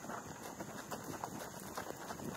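Horses' hooves on a dirt-and-gravel lane: a quick, uneven run of hoofbeats from ridden horses on the move.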